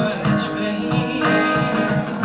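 Live acoustic guitar strummed in a steady rhythm, about three strums a second, under a man singing a held note.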